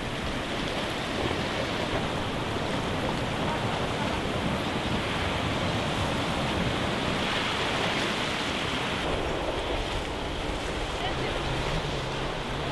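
Sea waves washing over a low rock shelf at the shoreline, a steady surf wash that swells louder about seven seconds in, with wind on the microphone.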